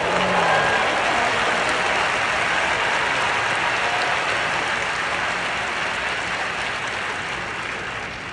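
Large audience applauding, a steady wash of clapping that eases off slightly toward the end.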